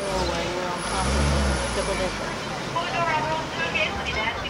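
Double-decker tour bus running, a steady engine rumble and road noise that swells briefly about a second in, with voices on board.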